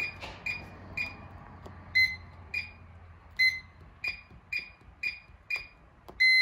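Kwikset Powerbolt 2 keypad deadbolt beeping once for each button pressed as a long code is keyed in. About ten short, high beeps come at uneven intervals, roughly one or two a second.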